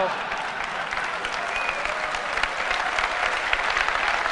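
Large audience clapping in steady applause, dense and even throughout.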